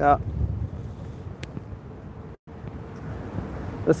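Airflow buffeting the phone's microphone in flight, a low rumble that is strongest at first and then eases. The sound cuts out completely for a moment about halfway through.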